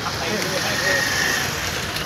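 Street noise of vehicles and the voices of a gathered crowd, with a brief steady high tone about a second in.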